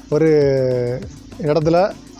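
Speech only: a man speaking Tamil, holding one syllable long for most of the first second, then a few quicker words.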